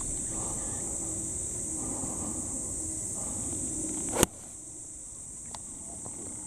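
A pitching wedge strikes a golf ball on a full shot: one sharp, crisp click about four seconds in. A steady high buzz of insects runs underneath.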